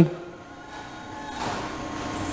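Lowering valve of a drum depalletizer's hand-pump hydraulic lift being opened: a hiss of fluid flow that swells over the first second and a half as the drum carriage starts to lower, over a faint steady hum.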